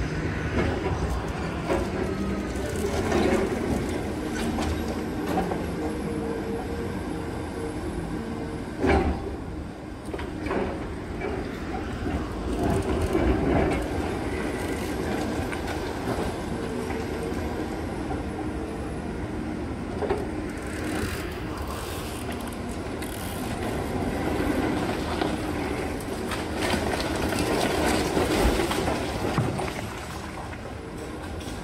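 Demolition excavator breaking up a concrete building with its hydraulic crusher: the machine's engine runs steadily under continuous crunching and grinding of concrete. Sharp knocks come about nine and twenty seconds in as pieces break and fall.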